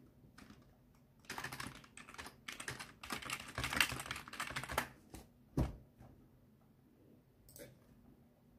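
Rapid typing on a computer keyboard, a dense run of key clicks lasting about three and a half seconds, followed by one louder knock and, near the end, a lone click.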